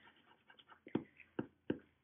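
Three short, sharp taps of a pencil on a paper worksheet, the first about a second in, then two more in quick succession.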